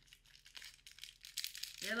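A small package's wrapping crinkling and tearing in short crackles as it is opened by hand, with a voice starting near the end.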